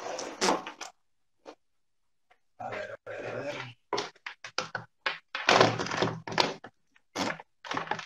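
Microphone handling noise heard through a video call: irregular bumps, knocks and rustling in several bursts, each cut off abruptly, as a headset and microphone are fiddled with and adjusted.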